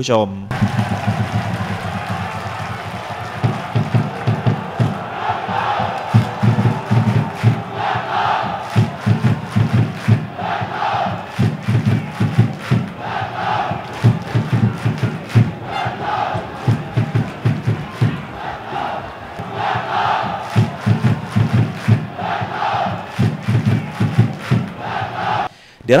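Football supporters in the stands chanting together to a steady beat, a shouted phrase coming round about every two and a half seconds.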